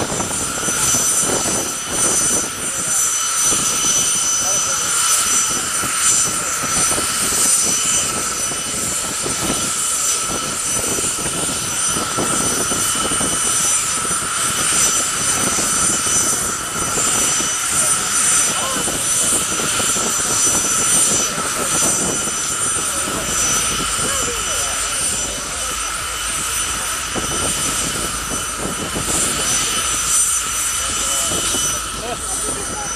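Jet car's jet engine running at idle, a steady high whine with several fixed tones that holds unchanged throughout, with crowd chatter beneath it.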